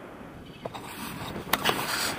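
Wind rushing over the camera's microphone in paraglider flight, growing louder about halfway through, with sharp crackles of buffeting near the end.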